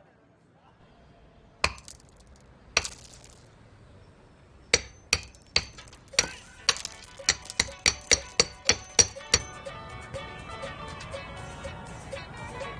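Hammer blows with a sharp, clinking ring: two single strikes a second apart, then a quickening run of about a dozen strikes, before background music comes in near the end.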